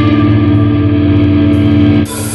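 Live rock band's electric guitars holding one sustained chord that rings steadily, without drums.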